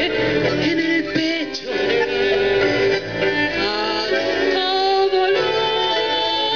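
A woman singing a tango into a microphone, holding notes with vibrato, accompanied by a tango ensemble with bandoneon and double bass.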